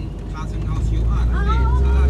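Vehicle engine and road rumble heard from inside the cabin, swelling louder and deeper about a second in as it drives into a rock tunnel. A person gasps, with a short voiced exclamation near the end.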